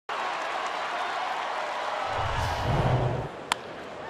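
Crowd noise from a large baseball stadium crowd: a steady murmur of many voices. A deeper rumble joins at about two seconds in, and a single sharp click comes near the end.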